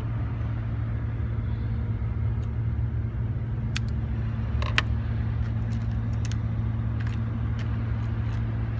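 Steady low motor hum running under a few light clicks from monofilament fishing line and tackle being handled. The sharpest click comes a little before five seconds in.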